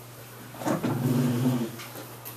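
A person's low, drawn-out murmur at one steady pitch, lasting about a second and starting a little under a second in.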